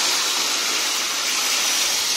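Water poured into a kadai of hot oil and deep-fried onions, giving a steady, loud sizzling hiss as it hits the oil.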